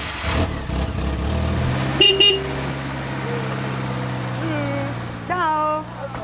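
A camper van's engine just started and running, settling into a steady idle, with two short horn toots about two seconds in. Voices call out near the end.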